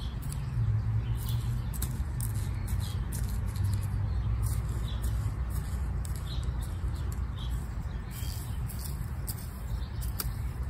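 A small hand trowel poking planting holes in loose garden soil, with soft scraping, over a steady low rumble. Faint bird chirps come through now and then.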